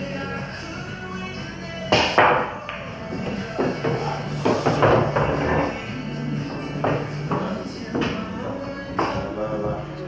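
Background music playing in a pool hall. About two seconds in there is a sharp clack of a pool cue striking the cue ball, followed by a few lighter knocks of balls on the table.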